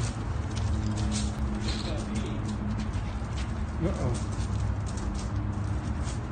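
Irregular clicking and scraping of a dog's claws on a concrete floor as she is held up and shifts her footing, over a steady low hum.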